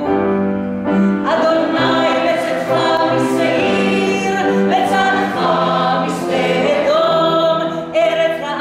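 Mixed choir of men's and women's voices singing held notes, with a woman soloist singing out in front of them.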